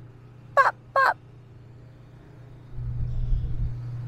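Two short pitched vocal blips about half a second apart, then wind buffeting the microphone with a low rumble from about three seconds in.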